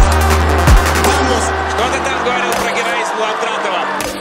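Electronic background music with a heavy sustained bass line and deep kick drums; the bass drops out about two and a half seconds in.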